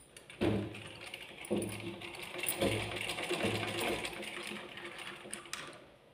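Black straight-stitch sewing machine stitching a seam through cotton cloth. It starts about half a second in, its running swells in surges about once a second, and it stops shortly before the end.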